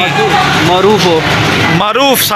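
A large truck passing close by, its engine a steady low hum that drops away near the end, with people talking over it.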